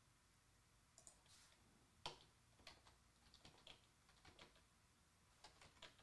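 Faint, sparse computer keyboard keystrokes, starting about a second in, the loudest about two seconds in.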